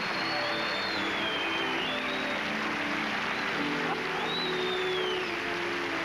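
Background music: held low notes with high sliding tones that rise and fall over them.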